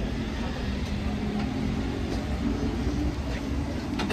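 Steady low rumble of street traffic, with a faint engine hum in the second half.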